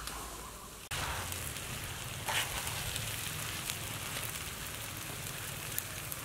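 Wood fire burning under a cooking pan: a steady rushing crackle with scattered sharp pops, starting abruptly about a second in.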